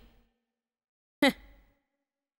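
Silence broken about a second in by one short, breathy sound from a woman's voice, over within half a second.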